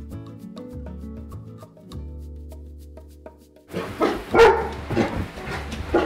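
Background music with plucked notes and a steady bass for the first few seconds, then a dog barking repeatedly and loudly over it.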